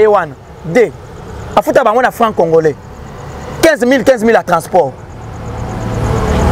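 A man speaking in short phrases while a road vehicle's engine rumbles, growing steadily louder over the last few seconds as it approaches.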